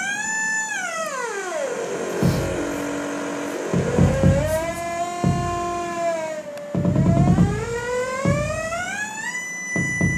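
Verbos Complex Oscillator modules in a modular synthesizer, screaming: a loud tone rich in overtones that glides in pitch. It falls steeply over the first two seconds, holds low, rises and levels off, then climbs again near the end. Irregular low thumps sound beneath it.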